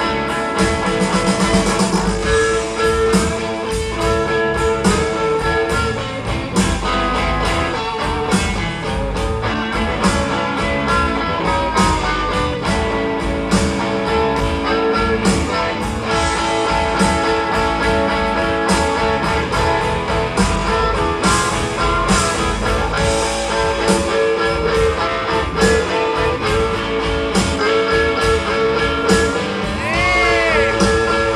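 Live rock band playing an instrumental guitar passage with no singing: two electric guitars over a steady beat, heard on an audience recording made in a concert hall.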